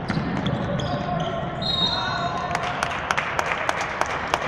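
Basketball bouncing on a hardwood court during play, with voices in a large hall. A quick run of sharp taps comes in the second half.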